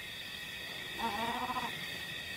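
Leopard giving one short growl about a second in, over the steady high chirring of night insects.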